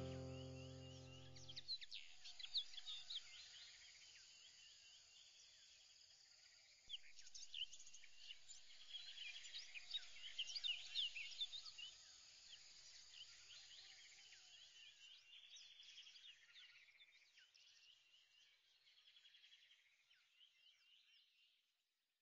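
Faint chirping of several birds, many short high calls overlapping, after a music chord dies away in the first two seconds. The chirping grows a little louder about seven seconds in and fades out near the end.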